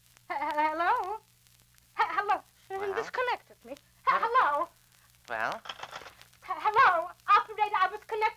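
Speech only: a voice speaking in short phrases with brief pauses between them, over a faint steady low hum.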